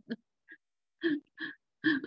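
A woman laughing in five short, breathy bursts spread over two seconds, with the sound dropping to dead silence between them as on video-call audio.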